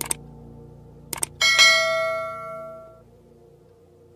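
Music: a few quick clicks, then a bright bell-like chime struck about a second and a half in that rings and fades out by about three seconds, over a faint held low note.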